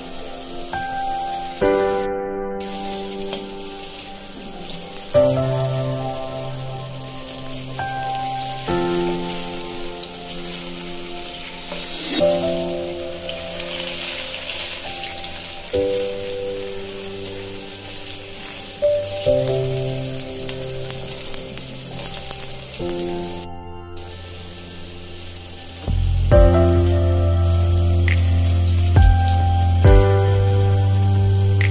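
Pakoras sizzling as they fry in hot oil in a kadai, under background music of slow held chords. A deep bass note enters near the end and is the loudest part.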